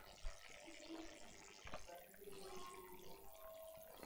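Near silence: faint room hiss, with one soft click about a quarter of a second in.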